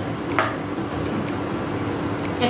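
Metal ladle stirring wet chopped greens in an aluminium pot, a soft squishing with one light knock about half a second in, over a steady hum.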